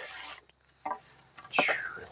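Wooden pole and cord being handled as a lashing is undone and the pole slid out. There is a brief rustle at the start and a few faint knocks about a second in. Near the end comes a short squeak that falls in pitch.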